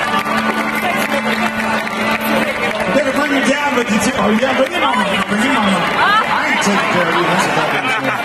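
Stadium rock concert heard from within the audience: a steady held note from the stage PA hangs over the crowd noise, and from about three seconds in, people close by in the crowd talk over it.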